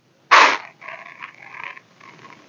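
Thick chicken curry being stirred in a pot with a silicone spatula. There is a loud wet squish about a third of a second in, then about a second of softer squishing and scraping.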